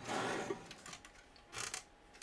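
An oven rack carrying a cast iron casserole dish slides into a wall oven with a soft scraping rush. Then the oven door swings shut with a short, muffled sound near the end.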